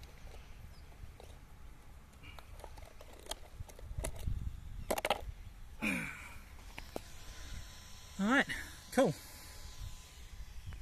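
Scattered plastic clicks and knocks as an RC buggy's body shell and body clips are handled and pulled off. Near the end come two short voice-like sounds that rise and fall in pitch.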